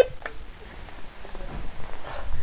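A phone alarm's beep cuts off right at the start as it is silenced, followed by faint rustling and a small click from the phone being handled.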